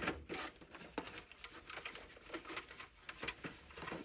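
Faint crinkling and rustling of hot laminating-pouch plastic and a cloth being handled as the plastic is folded over a canvas edge, with scattered small clicks and taps.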